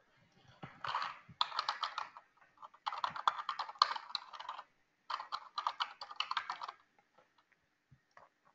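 Typing on a computer keyboard: rapid key clicks in three bursts with short pauses between them.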